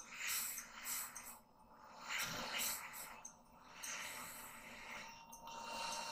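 A man breathing audibly close to a headset microphone: about four slow breaths, each a second or so long.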